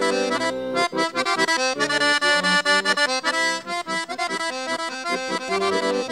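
Bulgarian horo dance music led by an accordion: a quick instrumental tune that runs note after note in an even, driving rhythm.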